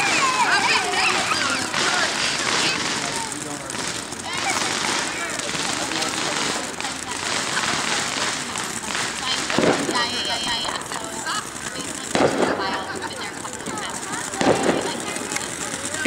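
Ground fountain fireworks spraying sparks with a steady hiss, broken by a few louder bursts in the second half.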